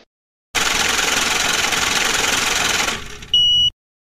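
A rapid, even mechanical rattle for about two and a half seconds that fades out, followed by a short, high, steady beep-like tone.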